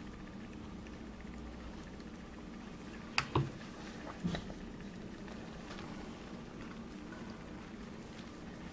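Quiet kitchen room tone with a steady low hum. Two short soft knocks come about three seconds in, and a smaller one a second later.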